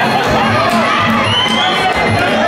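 Spectators shouting and cheering over loud music with a steady beat.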